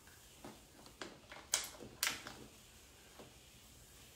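Resistance-strap handles and their clips clicking and knocking as they are attached to the straps: a handful of sharp clicks, the two loudest about a second and a half and two seconds in.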